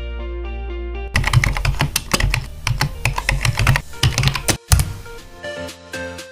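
Background music with the fast, irregular clicking of typing on a computer keyboard laid over it. The typing starts about a second in, stops for a moment near the end, then goes on over the music.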